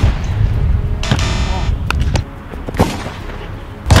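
Low rumbling with a few knocks, then a loud, sharp thump near the end: a basketball being kicked hard at goal.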